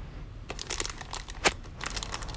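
Opened plastic gummy-candy bag crinkling as it is handled, a run of crackles starting about half a second in, the sharpest near one and a half seconds.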